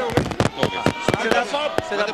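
A quick, irregular run of sharp knocks, about ten in two seconds, over voices.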